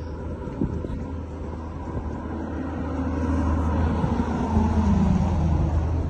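A car running and rolling along the road, heard from its open side window, with a steady low rumble that grows louder about halfway through.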